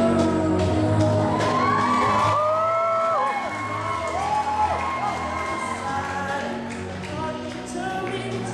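A man singing a serenade into a microphone over amplified backing music, with sliding, drawn-out notes a couple of seconds in.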